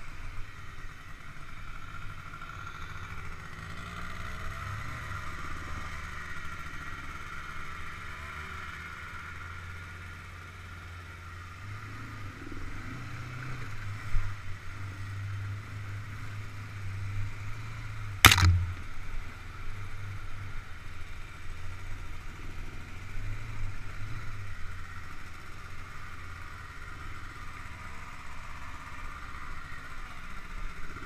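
Quad (ATV) engine running steadily at trail speed on a rough dirt track, with two sharp knocks, one about halfway through and a louder one a few seconds later.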